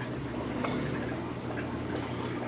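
Steady low hum of aquarium air pumps and filters, with faint bubbling water.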